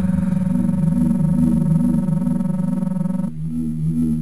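Synthesized science-fiction sound effect: a steady chord of pure electronic tones over a low electronic hum. The upper tones cut off suddenly about three seconds in, leaving the hum running.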